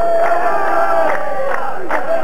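A large group of men chanting loudly together, the lines of the chorus in a Saudi qalta poetry performance, with a few sharp beats among the voices.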